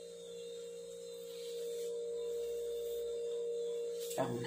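A steady hum held on one tone, growing a little louder about halfway through.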